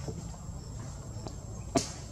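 Steady high-pitched insect drone over a low background rumble, with one sharp click near the end.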